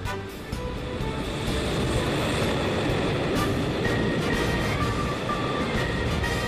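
A container freight train hauled by an electric locomotive passing at speed, its rushing noise building about a second in and staying loud as the wagons go by. Background music plays over it.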